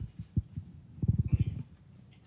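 Low thumps and rumbling handling noise from a handheld microphone being passed over and gripped. There is a thump at the start, another about half a second in, then a longer stretch of low rumbles near the middle.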